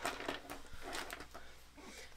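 Light rustling and a few soft knocks as small stationery items and their packaging are handled and set aside.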